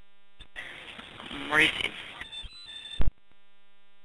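Recorded police dispatch radio traffic: a transmission opens with a click and carries static hiss and a single short word. It then gives a few brief electronic beeps and ends in a loud squelch burst about three seconds in, when it cuts off.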